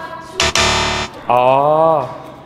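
A game-show 'wrong answer' buzzer sound effect: one harsh, steady buzz lasting about half a second, marking an incorrect guess. Shortly after, a man says a drawn-out 'oh'.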